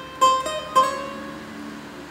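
Cavaquinho picked one note at a time, playing a short phrase of a solo. There are three plucked notes in quick succession in the first second, and the last one rings out and fades.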